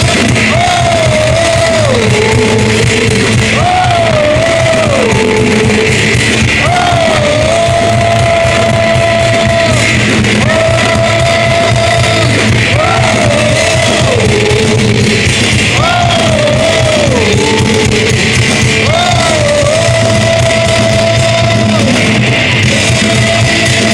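Live heavy metal band playing loudly, with singing over the band. A melody of long held notes, each phrase stepping down in pitch, repeats about every three seconds.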